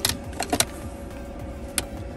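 A few light clicks and taps from handling a small motion-sensor LED light bar against a cabinet shelf: one at the start, two close together about half a second in, and one near the end.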